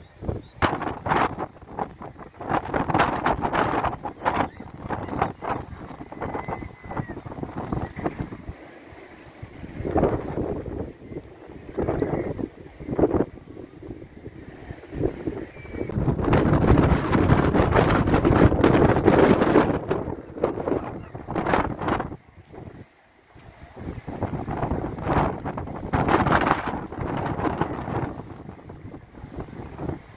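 Wind buffeting the microphone in uneven gusts, with a long strong gust in the middle and a brief lull a little later.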